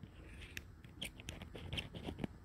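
Faint scattered clicks and small metallic ticks, about six in two seconds, from a soldering iron tip being unscrewed and swapped for a smaller one, over a low steady hum.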